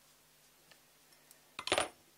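A quiet workbench with a few faint handling ticks, then one short metallic clink near the end as the steel hex driver is pulled from the bolt and set down beside the carbon-fibre frame.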